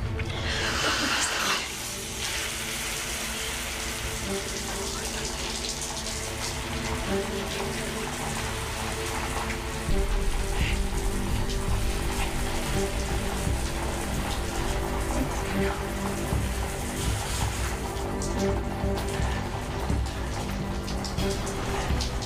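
A shower turned on and running, its spray giving a steady hiss that is strongest at first. Background music with long held notes plays under it and grows louder about halfway through.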